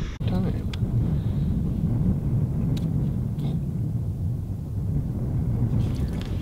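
Steady low rumble of wind on the microphone, with a couple of faint clicks about three seconds in.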